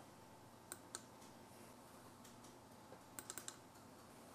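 Faint computer mouse clicks over near silence: two clicks about a second in, then a quick run of four or five near the end.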